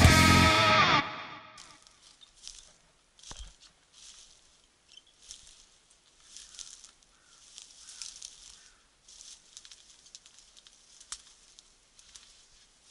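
Distorted electric-guitar rock music fades out about a second in. Then comes faint, irregular rustling and crackling of dry brush and grass, with one dull thump about three seconds in and a sharp click near the end.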